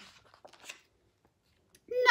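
Faint papery rustle of a picture book's page being turned, over about the first second.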